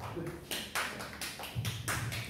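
A few people clapping briefly, with quick irregular claps about half a second in.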